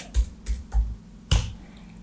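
Computer keyboard keystrokes: about five separate sharp taps over the first second and a half, as a word is typed in.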